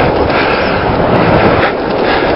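Steady rush of wind on the microphone while riding a bicycle.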